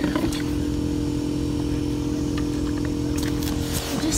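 A steady motor hum with a low rumble underneath, holding one even pitch, with a few faint ticks.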